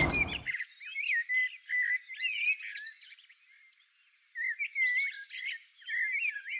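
Small birds chirping and twittering in quick, high chirps, thin with no low sound. They come in two spells with a pause of about a second between them, and pick up again at the end.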